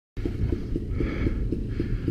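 Dirt bike engine idling with a regular low throb, roughly six pulses a second.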